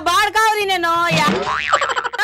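A raised voice speaking, with a springy cartoon 'boing' sound effect, a quick glide up and back down in pitch, about one and a half seconds in.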